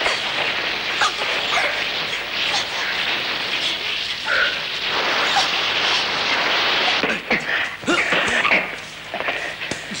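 Women fighting at close quarters: short shrieks, yelps and cries over continuous scuffling noise, slackening somewhat near the end.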